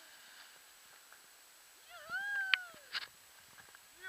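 A single high, drawn-out vocal call about two seconds in, its pitch rising and then falling, followed by a brief hiss.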